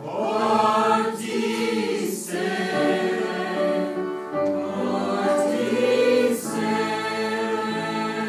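A choir singing in several parts, holding long chords.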